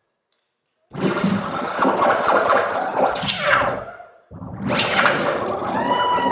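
Sound effect in a dance-routine music mix: after a clean, dead-silent break, a loud rushing noise with falling sweeps starts about a second in. It dips briefly near the middle and returns with a few pitched tones near the end.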